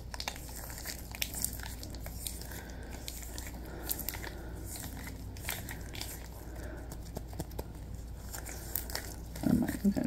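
Latex gloves rubbing and crinkling as the gloved hands move and press together, giving irregular small crackles and clicks over a faint steady low hum.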